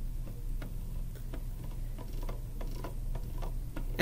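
Computer mouse scroll wheel clicking notch by notch as the page is scrolled: a faint, even run of light ticks, about three a second.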